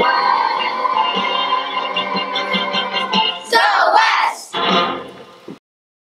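Children's chorus singing a show tune over a recorded backing track. The music ends in two louder final bursts and cuts off suddenly to silence about five and a half seconds in.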